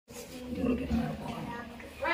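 Indistinct human voice without clear words, starting after a brief cut-out of all sound at the very start.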